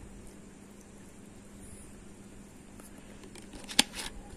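Clear soda poured from a plastic bottle into a glass of whisky, a faint steady fizzing pour. A single sharp click near the end.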